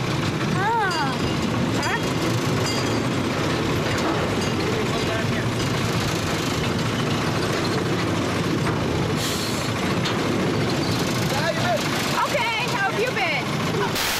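A small ride-on tourist train running, a steady rumble and rattle throughout. Voices call out briefly about a second in and again near the end.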